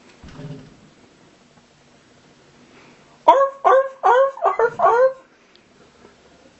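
A boy's voice imitating Godzilla's roar as a quick run of about six yelping 'arf' barks over roughly two seconds, each falling in pitch. A soft low thud comes under a second in.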